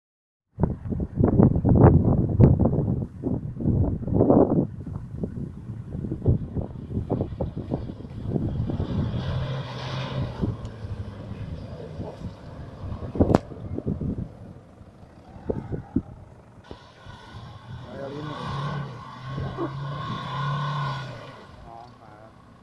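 Off-road SUVs, a Toyota Land Cruiser 150 and then a Jeep Grand Cherokee, crawling slowly through mud and tall dry grass close by, engines working at low speed. The loudest part is a few seconds of irregular low rumbling at the start, and there is one sharp knock about halfway through.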